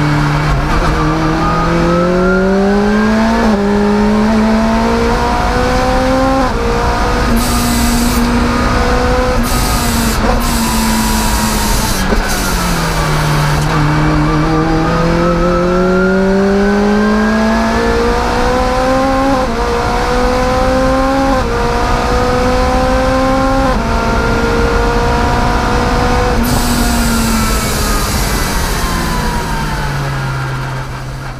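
Rotrex-supercharged Lotus Exige engine heard from inside the cabin at speed, revving up through the gears with a sharp drop in pitch at each upshift. About ten seconds in the revs fall away and then climb again through several more quick upshifts, and they fall near the end.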